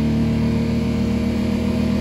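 2009 Infiniti FX35's 3.5-litre V6 engine running steadily just after being revved from idle, heard from inside the cabin. The engine has a stored P0024 code, a bank 2 exhaust valve timing fault.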